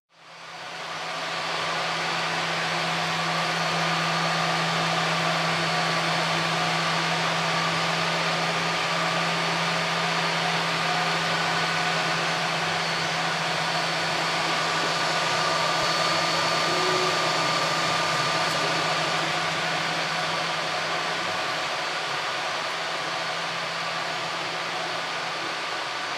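3D printers running: a steady whir of cooling fans with a low hum and thin, faintly shifting motor whines over it, fading in over the first second or two.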